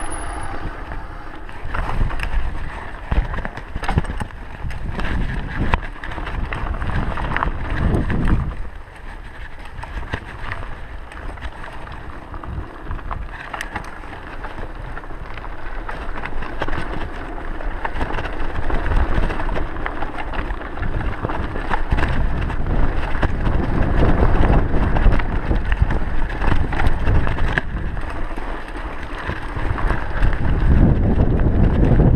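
Mountain bike riding down a dry dirt singletrack: tyres running over dirt and stones, with many quick rattles and knocks from the bike over bumps, and wind buffeting the camera microphone. It goes quieter for a stretch about a third of the way in, then louder again later on.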